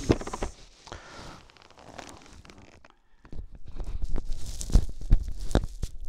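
Rubbing and scraping handling noise picked up by a lavalier microphone inside a Schuberth full-face helmet as the chin strap is undone and the helmet is pulled off, with a short lull about halfway and a few low knocks near the end.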